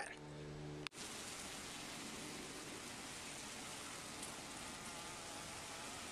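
Honeybees humming at the hive: a steady low drone for about a second, cut off abruptly and followed by a steady, even hiss.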